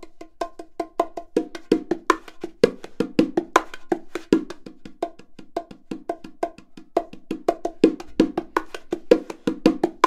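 A pair of bongos played by hand in a backbeat groove: a fast, even run of soft fingertip ghost notes filling the spaces between louder accented strokes on the two drums.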